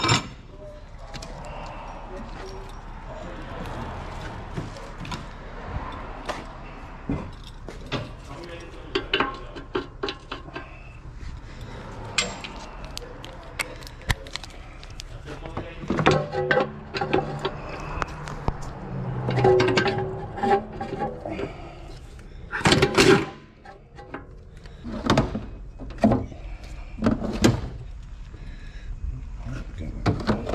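Metal tools and sockets clinking and knocking against one another in a repair shop, with indistinct voices and music in the background.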